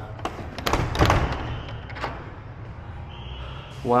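Metal slide bolt on locked wooden louvred shutters being worked and rattled: a string of clicks and knocks, the loudest a knock about a second in.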